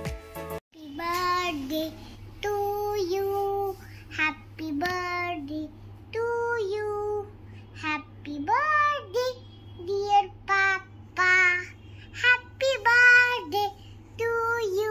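A young girl singing a song in a high voice, with held notes and sliding pitch, over a steady low hum. The first second holds the end of a piece of background music.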